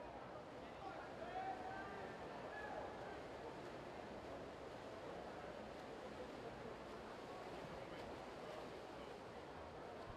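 Faint, steady wash of indoor pool-hall noise during a race: swimmers splashing and a distant crowd. A few faint voices call out between about one and three seconds in.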